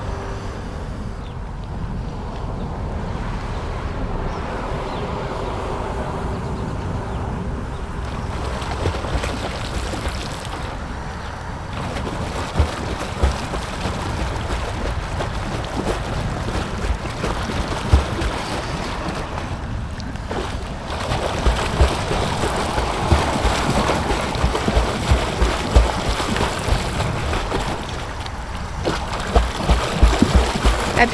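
Lake water sloshing and lapping close by, with wind rustling on the microphone and irregular low thumps that come more often in the second half.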